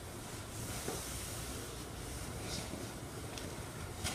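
Quiet steady hiss of room noise, with a few faint soft rustles.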